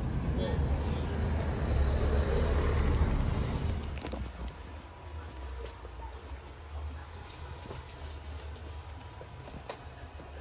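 Road and engine noise heard inside a moving car: a steady low rumble with a louder rush for the first four seconds, which then eases off.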